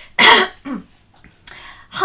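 A person clearing their throat: one short, sharp burst about a quarter of a second in, with a brief voiced trail just after.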